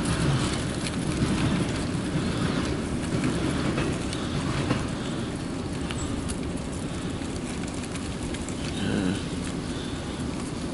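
Freight cars of a CSX mixed freight train rolling past steadily, a continuous low rumble of steel wheels on rail with faint scattered clicks.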